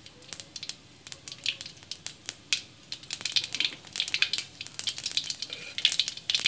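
Mustard seeds popping and spluttering in hot oil in a metal kadai. The sharp crackling pops are sparse at first and come thicker and louder from about three seconds in, throwing seeds up the pan's sides: the oil has reached tempering heat.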